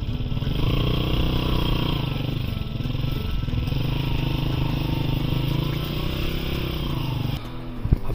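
Small motorcycle engine running in low gear as it is ridden slowly through deep, waterlogged mud. Its pitch rises and falls with the throttle, and it stops shortly before the end.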